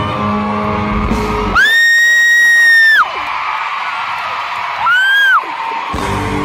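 A fan screaming close to the phone's microphone over live concert music: one loud, high, steady scream of about a second and a half, then a shorter one that rises and falls near the end. The music drops back under each scream.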